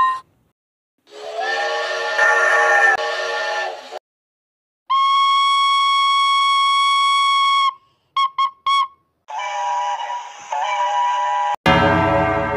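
A string of separate steam locomotive whistle blasts with short silences between them: a chord whistle of about three seconds, a steady single-note whistle of nearly three seconds, three short toots, and a two-part whistle with steam hiss. Near the end a loud locomotive bell starts ringing suddenly.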